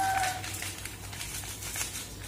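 Faint rustling and crinkling while biryani masala powder is poured over raw chicken pieces in a stainless steel bowl.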